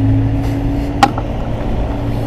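Steady low mechanical hum, with one sharp click about a second in.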